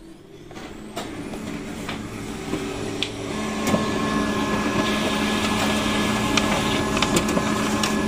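Canon iR 2318 photocopier starting a copy run: its motors spin up and grow louder over the first few seconds, then run steadily with a hum and a thin whine. Scattered clicks from the paper-feed mechanism sound over it.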